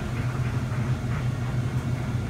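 A steady low hum with a faint even noise over it, unchanging throughout.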